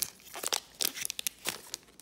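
Foil wrapper of a Goodwin Champions trading-card pack being torn open and crinkled, an irregular run of sharp crackles.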